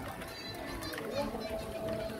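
Background chatter of children and adults playing in the open, with voices at a distance and no single loud event. A faint steady tone enters about three quarters of the way through.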